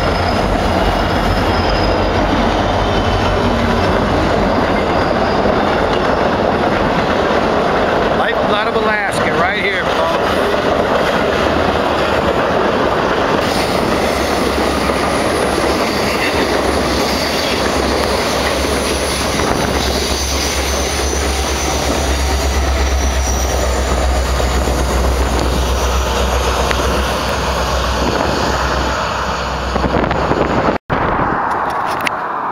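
An Alaska Railroad diesel freight train passing close by: the locomotive, then a long string of hopper cars, with wheels running steadily and loudly on the rails. A brief wavering wheel squeal comes about nine seconds in.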